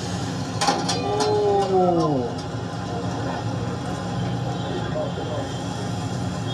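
Street-food frying station: a steady low hum and hiss of a large steel kadai of oil, with a few sharp metal clanks of the ladle about a second in. Just after, a voice slides down in pitch.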